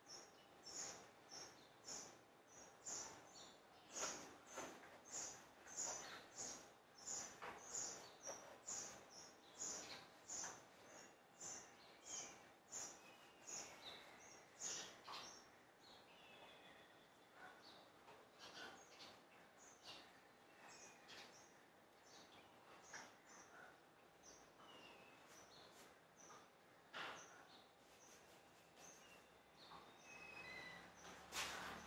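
Near silence with faint small birds chirping: short high chirps repeat about twice a second for the first half, then give way to fewer, sliding calls.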